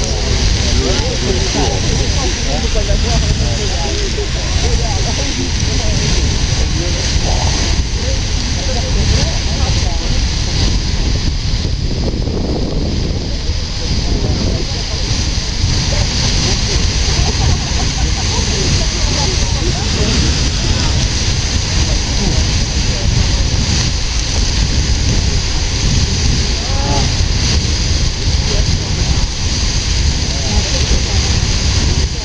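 Beehive Geyser erupting: a steady, loud rushing of its water jet and falling spray, with voices murmuring underneath.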